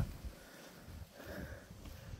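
Quiet, with a faint sniff through the nose a little past halfway.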